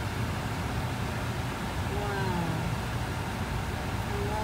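Steady low rumble of a car's engine and road noise heard from inside the cabin, with a faint voice speaking briefly about two seconds in.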